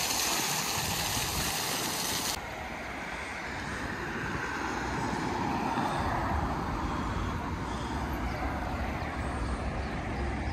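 Ground-level fountain jets splashing in a steady hiss, which cuts off abruptly after about two seconds. Then comes street traffic: a car drives past, and a low rumble of traffic continues through the second half.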